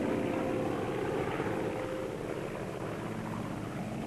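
Propeller aircraft engines droning steadily overhead, easing off slightly in level.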